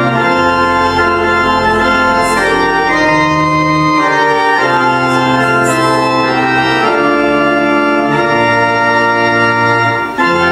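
Church pipe organ playing a hymn: held chords that move to a new chord every second or two over sustained bass notes.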